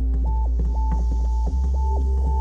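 Background drama score: a deep, steady bass drone under a line of held high synth notes that step up and down in pitch.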